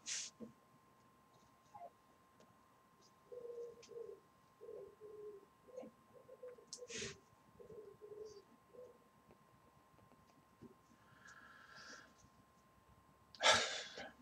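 Faint breaths of someone taking hits on a rebuildable atomizer vape: a short rush of breath at the start, another about seven seconds in and a softer one just before the end. Between them, a run of faint short low tones.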